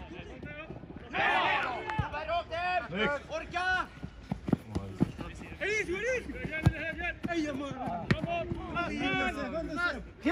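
Footballers shouting and calling to each other across the pitch, with a few sharp thuds of the ball being kicked, the loudest about two-thirds of the way through.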